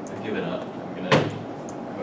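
A single sharp thump about a second in, like a door shutting or a hard object set down, over faint voices in the room.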